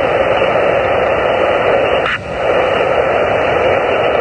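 Band noise hissing steadily from a Xiegu G90 HF transceiver's speaker on 17-metre upper sideband, with no top end above the receive filter, dipping briefly about two seconds in. No station is answering the CQ call.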